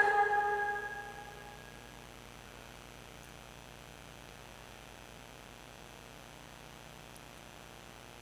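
A Quran reciter's last drawn-out, wavering note breaks off right at the start, its reverberation dying away over about a second and a half. After that only a faint steady room hum remains.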